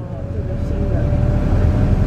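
Inside a moving tour bus: steady low engine and road rumble that grows louder, with a faint steady whine above it.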